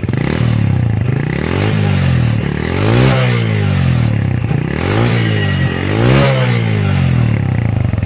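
Bajaj Boxer 100cc single-cylinder four-stroke engine heard at the exhaust, revved up and let back down about four times, the loudest blips about three and six seconds in.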